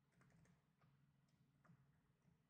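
Very faint typing on a computer keyboard: a handful of scattered keystrokes.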